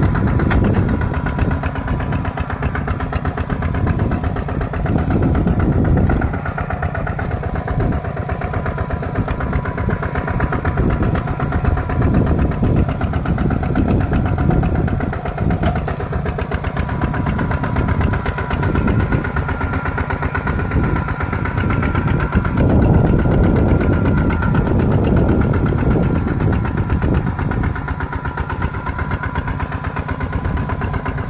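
Kubota RT140 Plus single-cylinder diesel engine on a walking tractor running steadily under load while pulling a plow through the soil. Its level swells and eases every few seconds.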